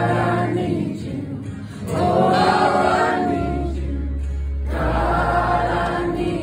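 Live band performance: several voices singing together in long held phrases, with short breaks between them, over a low bass line.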